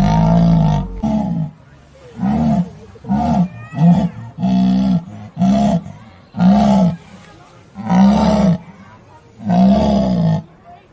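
Lion roaring in a bout of about ten short calls, each rising and falling in pitch, spaced unevenly about a second apart.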